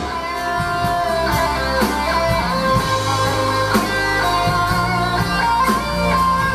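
Live band music: an electric guitar plays a melodic line of picked notes over held keyboard chords and sustained bass notes.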